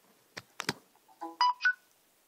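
Two sharp clicks as a micro-USB plug is pushed into a Samsung Galaxy S3. About a second later comes a short electronic chime of a few notes stepping up in pitch, signalling that the USB device has connected.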